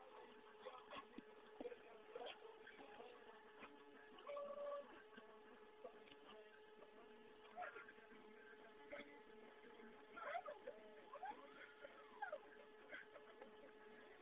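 Stepper motor slowly driving a CNC axis lead screw, heard as a faint steady whine with a few light clicks.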